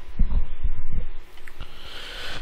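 About five dull, low thumps in quick succession in the first second, then a couple of fainter ones.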